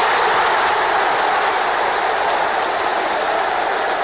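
Large football stadium crowd roaring and cheering a home-side goal, a loud, steady wall of sound.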